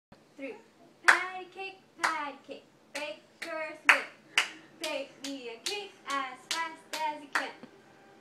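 Hands clapping a patty-cake rhythm, about a dozen sharp claps. They come a second apart at first and about two a second from the middle on. A voice calls out a short syllable with most claps.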